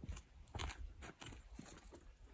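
Faint, scattered crunching steps on a dirt corral floor as a boy moves in to a mule's hindquarters and lifts its hind foot.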